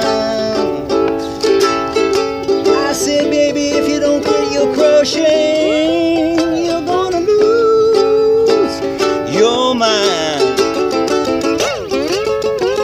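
Slide ukulele playing a blues instrumental break: a busy run of plucked notes, with the slide gliding the pitch up and down between them and one long downward swoop near the end.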